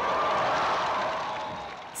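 Large crowd cheering and applauding in one swell that fades toward the end.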